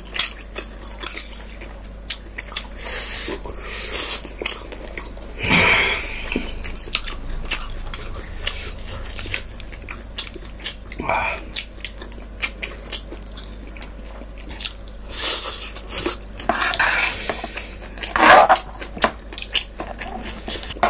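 Close-miked chewing and slurping of noodles, with a metal spoon and fork clicking and scraping on a metal plate. Small clicks run throughout, with a few louder slurps.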